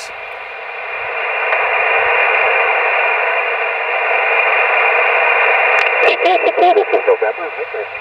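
Band noise hissing from a portable HF transceiver's speaker, swelling over the first couple of seconds as the magnetic loop antenna's tuning knob is turned toward resonance; the loudest noise marks the antenna's tuned frequency. From about six seconds in, a voice from the receiver comes through the hiss.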